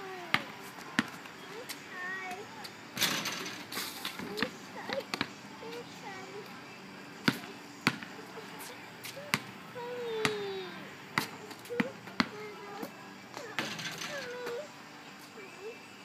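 A basketball bouncing on a concrete driveway, dribbled unevenly by a child: single sharp bounces, often a second or more apart. Two longer rushes of noise come in, about three seconds in and again near the end.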